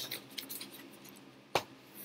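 Sheets of paper rustling as they are handled, then a single sharp click about one and a half seconds in.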